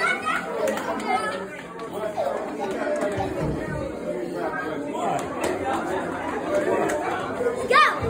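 Indistinct chatter of several voices talking at once, with a short high call near the end.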